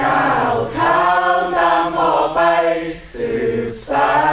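A group of young men and women singing together in chorus, in sustained sung phrases with a short break for breath about three seconds in.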